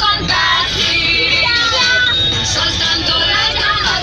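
Children's voices chattering and singing along to music inside a moving bus, with the low rumble of the bus running underneath.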